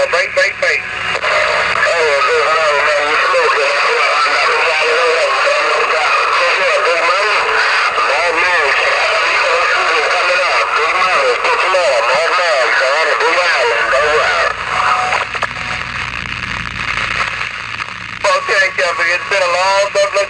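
Voices received over a CB radio's speaker, thin and band-limited under constant static. About fourteen seconds in, the talk gives way to a few seconds of static with a low hum, and voice resumes near the end.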